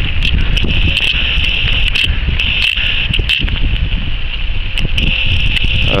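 Footsteps through grass with a loud low rumble of wind and handling noise on a handheld camera's microphone, broken by irregular short thuds and clicks.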